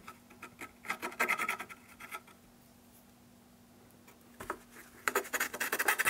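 A small hand tool scratching along a glued brace edge on a wooden guitar top, in quick light strokes: one cluster about a second in, then a quiet spell, then a denser run of strokes near the end.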